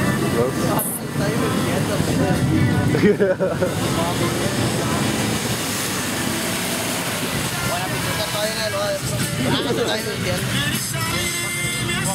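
Jeep Wrangler's engine running as it drives through a mud pit of water and mud, under loud crowd voices.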